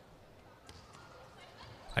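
A faint thump of a volleyball being struck on the serve, about two-thirds of a second in, in an otherwise quiet stretch.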